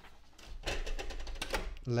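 A sheet of printer paper being handled and slid into the plastic rear input tray of an HP DeskJet 3772 printer: a quick run of light rustles and small clicks.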